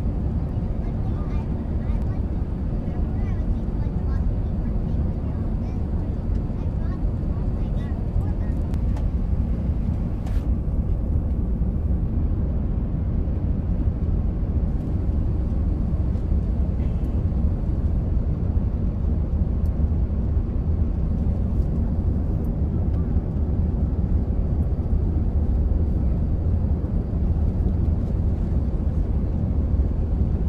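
Jet airliner cabin noise in flight: a steady, deep rumble of engines and rushing air, heard from inside the cabin by a window seat.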